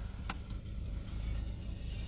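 Low, steady rumble of a car heard from inside the cabin, with two faint clicks early in the pause.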